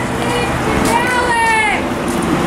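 Indistinct talking from people close by, one voice falling in pitch about a second in, over a steady low hum.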